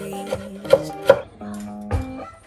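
A chef's knife chopping julienned carrots on a wooden cutting board: a few sharp knife strikes against the board, the loudest two about three-quarters of a second and a second in, over background music.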